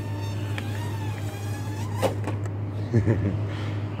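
Hubsan X4 H107D+ micro quadcopter's motors whining with small wavering shifts in pitch, then a click about two seconds in as it touches down, after which the whine fades out.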